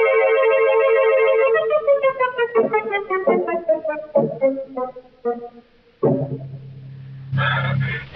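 A dramatic radio-drama music bridge played on organ: a held chord that wavers, then a run of falling notes that fades out. Near the end come a low steady drone and a sudden rush of noise.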